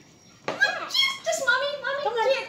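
High-pitched excited voices, a young child's among them, starting about half a second in, with no clear words.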